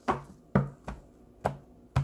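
A tarot deck being shuffled by hand: five sharp slaps of the cards at uneven intervals.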